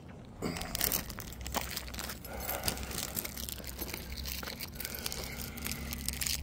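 Irregular rustling and crinkling with scattered small clicks: handling noise from a camera carried by hand while walking.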